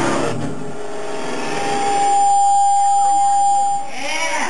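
A band's electric guitars and bass stop playing about half a second in. Then a steady, single-pitched squeal of amplifier feedback rings out for about two seconds and cuts off just before the end, over faint crowd voices.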